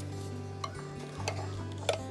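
Background music of steady held notes, with a few light clicks and taps as a glass jar of jam is picked up and its lid handled, the last and loudest near the end.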